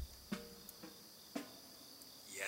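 Faint, steady, high chirring of crickets, with a few soft clicks.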